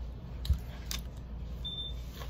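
A thump and a couple of light clicks, then a short, high electronic beep near the end, over a steady low hum.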